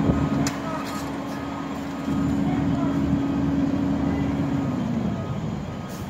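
A fire engine's diesel engine runs steadily at a fixed speed and drops in pitch near the end as it throttles down. A few light clicks come in the first second and a half, and there are faint voices in the background.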